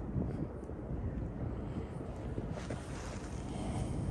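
Wind buffeting the camera's microphone: an uneven low rumble.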